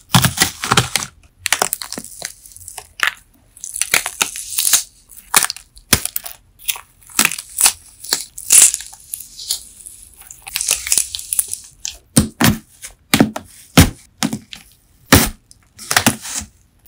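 Wax-coated, slime-soaked melamine sponge crackling and crunching as a crinkle-cut blade slices through its brittle coating and fingers break the pieces apart: an uneven run of crisp cracks, some loud. Recorded through an iPhone's built-in microphone.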